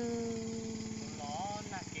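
A voice singing a long held note that sags slightly in pitch, then a short gliding phrase. A small motorcycle engine runs steadily underneath.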